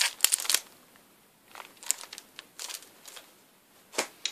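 LP record sleeves being handled: a quick cluster of rustles and taps as one album is set aside, then a few softer rustles as the next one is pulled out.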